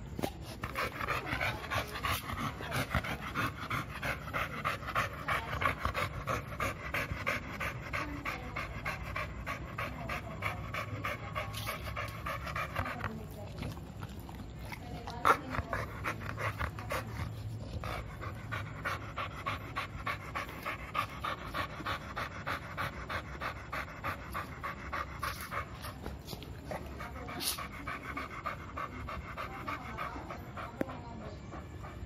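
American Bully dog panting fast and evenly, close to the microphone, in long runs broken by a couple of short pauses. There is a single sharp click a little past the middle.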